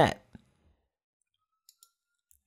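A computer mouse button clicked once, sharply, about a third of a second in, then two faint quick clicks close together near the end, with near silence between.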